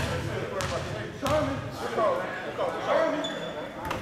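A basketball bouncing a few times on a hardwood gym floor, each bounce a sharp slap, as a player dribbles before a free throw. Voices talk in the background between the bounces.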